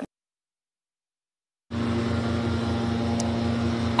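Dead silence for about the first second and a half. Then a steady engine sound cuts in suddenly, running at an even pitch with a regular low throb, like an idling motor.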